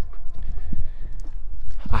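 Footsteps on asphalt with a low rumble from the phone's microphone being carried while walking, and a few faint clicks.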